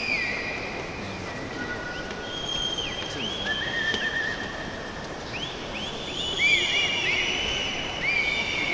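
Football stadium crowd noise: a packed stand's steady background hubbub with many overlapping high whistle-like tones, some held and some sliding up and down, thickest near the end.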